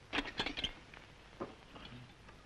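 A few quick, light clicks and knocks in the first second, then a single faint tick, as a spoon is worked against the lid of a metal cooking pot.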